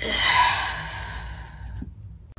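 A person's long, breathy sigh that starts abruptly and fades out over about a second and a half.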